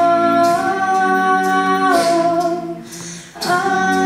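A cappella group singing held chords in close harmony, a female voice among them. The voices shift chord twice, thin out and drop away briefly near the end, then come back in together on a new chord.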